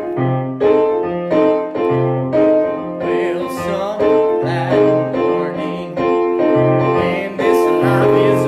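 Electronic keyboard playing in a piano voice: full chords struck in a slow, steady rhythm with a low bass note held under each change.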